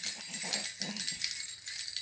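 A baby's jhunjhuna, a stick rattle with small metal bells, jingling in quick shakes, with short repeated vocal sounds alongside.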